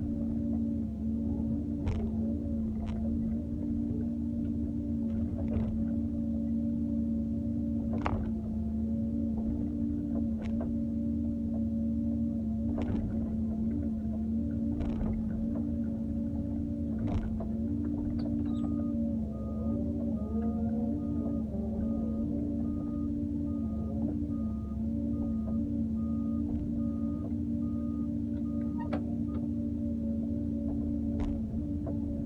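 Doosan wheeled excavator's diesel engine and hydraulic pump running steadily with a droning whine while the bucket digs soil, with a sharp knock every few seconds. A little past halfway a series of short, evenly spaced beeps starts and runs until near the end.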